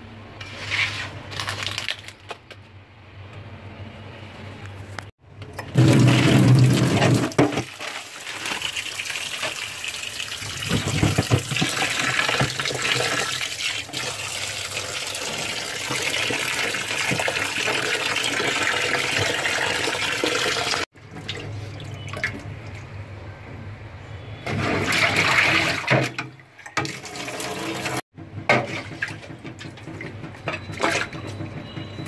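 Kitchen tap running hard into a steel bowl of raw meat pieces in a stainless steel sink while a hand rubs and swishes the meat to wash it. The heavy water flow starts about five seconds in and stops suddenly about twenty seconds in; before and after there are shorter, quieter bursts of splashing water.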